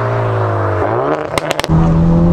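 Hyundai i30N's turbocharged 2.0-litre four-cylinder engine, breathing through an open cone air filter, heard from inside the cabin. Its revs hold steady, then rise sharply a little before the middle in a quick throttle blip from the car's rev-matching, with a few sharp crackles. It then pulls on at a steady higher pitch.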